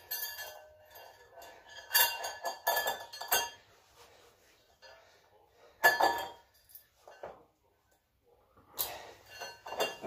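Metal chain of a weighted dip belt clinking as a 10 kg plate is loaded onto it and the belt is fastened round the waist. The sharp clinks come in bunches about two to three and a half seconds in and near nine seconds, and the loudest comes about six seconds in.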